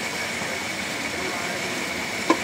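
Old car engine idling steadily with the hood up, a hiss of running machinery and a thin steady high tone over it.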